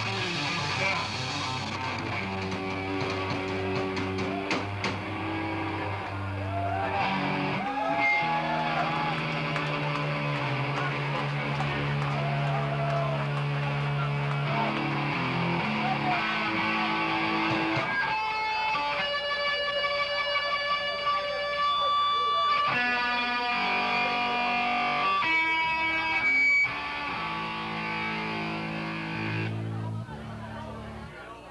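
Live rock band playing through amplifiers: electric bass and electric guitar holding long sustained notes. In the second half, high ringing tones are held over the bass for several seconds at a time.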